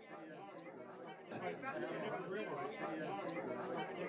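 Background hubbub of many people chatting at once, overlapping voices with no single speaker standing out, growing a little louder about a second in.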